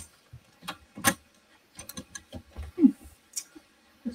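Scattered light clicks and taps of craft tools and supplies being moved about on a work table.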